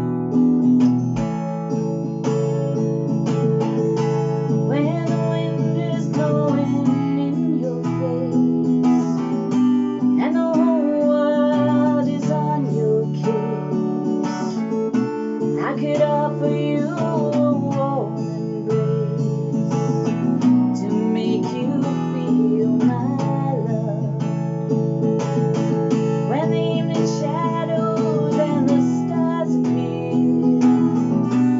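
Acoustic guitar with a capo, strummed steadily in chords, with a woman singing over it from a few seconds in.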